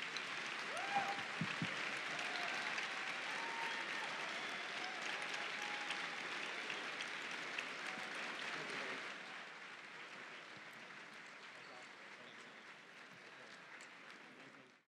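Audience applauding, with a few voices calling out early on; the applause fades down over the last few seconds.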